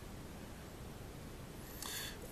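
Quiet room tone: a faint, steady hiss with no clear source, and a brief soft rush of noise near the end.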